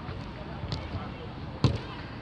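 A football being kicked: one sharp thud about one and a half seconds in, with a lighter tap earlier, over faint calls of players.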